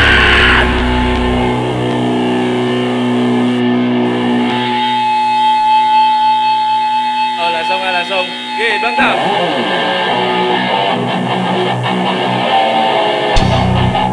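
Heavy metal band playing live. About a second in, the deep low end drops out and electric guitar carries a thinner passage with a long held note. Near the end, low thumps from the drums come back in.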